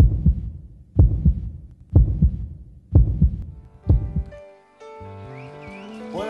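Heartbeat sound effect in a TV show's intro jingle: five double thumps (lub-dub) about a second apart. After about four and a half seconds it gives way to sustained synthesizer chords with a rising sweep as the music starts.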